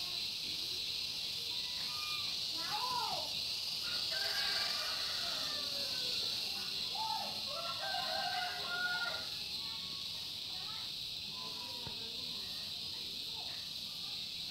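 Outdoor rural yard background: a steady high hiss, with scattered short calls that rise and fall in pitch, most of them in the middle, from animals that may be fowl.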